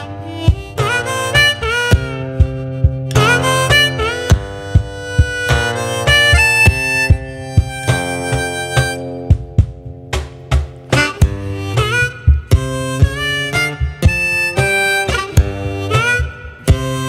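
Harmonica playing a lively folk melody with notes that slide up, over acoustic guitar bass notes fretted with one hand, and sharp rhythmic hits on a wooden box the player sits on, struck with his free hand.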